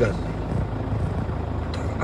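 Steady low hum of a car's engine idling, heard from inside the car's cabin.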